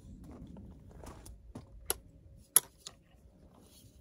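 Rifle being lifted off its tripod clamp: soft handling and rustling with three sharp clicks near the middle, the loudest about two and a half seconds in.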